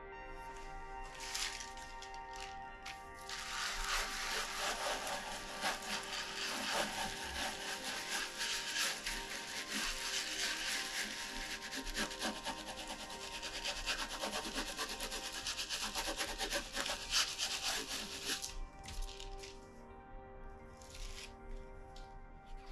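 A baren rubbed in quick, dense strokes over the back of a sheet of paper laid on an inked woodblock, printing the key block. There are a couple of short rubs at first, then continuous scratchy rubbing that stops a few seconds before the end, with background music throughout.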